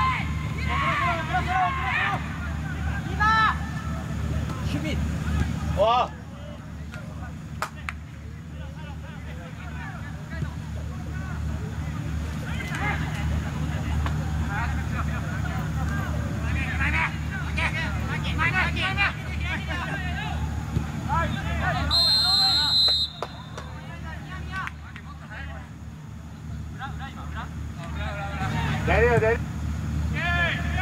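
Footballers' scattered shouts and calls across the pitch over a steady low rumble. About two-thirds of the way through, one referee's whistle blast lasting about a second.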